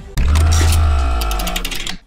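Short musical transition sting: a deep bass note with held tones above it starts a moment in and fades out over under two seconds.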